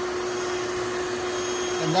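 Vacuum running steadily as a yellowjacket suction trap, drawing live yellowjackets in through a hose into the collection jug. The motor gives an even hum with one steady tone.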